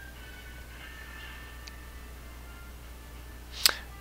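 A steady low hum with faint thin high tones over it, then a single sharp mouse click near the end.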